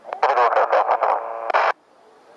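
Air traffic control radio transmission: a voice over an airband radio, narrow and tinny, that cuts off sharply near the end as the transmission ends.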